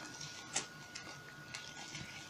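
Faint clicks and rustling from hands handling a plastic fashion doll and its dress, with the sharpest click about half a second in.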